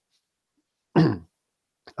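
A man clears his throat once, a short burst about a second in, its pitch dropping as it ends.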